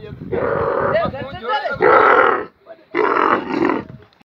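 Young camel bellowing: three long calls, each under a second, with short gaps between them.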